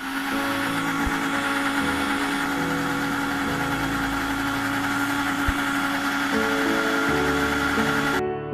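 Electric mixer grinder switched on and running steadily, its blades churning pea pods into a green paste in a steel jar: a loud, even motor whir with a steady hum.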